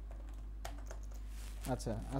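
Computer keyboard keystrokes: a quick run of key clicks beginning just over half a second in, as a short git commit message is typed and entered. A man's voice starts speaking near the end, over a steady low hum.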